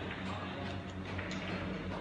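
Sharp clicks of carom billiard balls, the cue tip striking the cue ball and the balls knocking together, the clearest click about a second and a half in, over a steady low hum.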